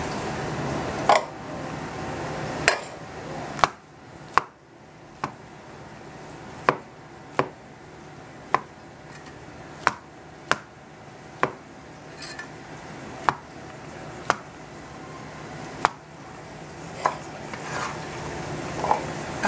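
A cleaver slicing mushrooms on a plastic cutting board: sharp knocks of the blade striking the board, at uneven intervals of about one a second.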